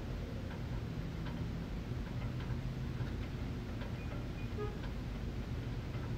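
Steady low background rumble with faint, irregular ticks scattered through it.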